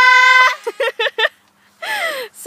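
A girl's voice holding one long high-pitched note that breaks off about half a second in. A few short vocal bursts follow, then a brief pause and a falling cry near the end.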